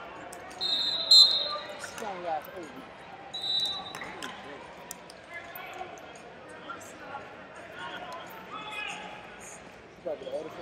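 Referee's whistle blown sharply about a second in, with a second, shorter whistle a couple of seconds later. Between them come faint voices and scattered thumps from feet and bodies on the wrestling mat in a large hall.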